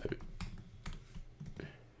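Typing on a computer keyboard: a run of separate keystrokes, several a second, while code is entered into an editor.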